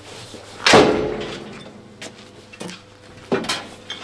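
Heavy armoured steel rear door of a BMP-based vehicle slammed shut under a second in, a loud metallic clang that rings on. Lighter clunks follow later as the other rear door is handled.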